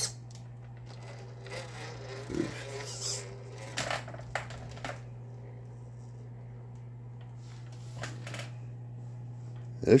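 A steady low hum under scattered light clicks and rustles, with a brief murmured sound about two and a half seconds in.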